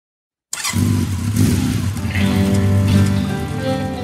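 A motorcycle engine starts up loud and rough about half a second in, and from about two seconds in the song's music comes in with held instrumental notes over the engine.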